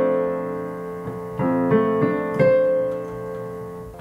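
Piano-sound chords played on a digital keyboard, trying out chord voicings: a chord struck at the start, then three more about a second and a half, two and two and a half seconds in, each held and fading.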